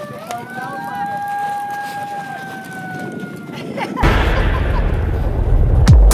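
A long wailing siren tone that slowly dips and rises in pitch, fading out after about three and a half seconds. About four seconds in, a loud rushing swell with deep bass cuts in, building up into electronic dance music.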